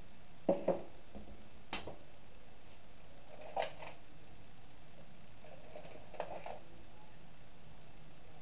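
A few light knocks and clicks from handling kitchen items and a plastic bottle: two close together about half a second in, then three more spread over the next six seconds, over a steady low hiss.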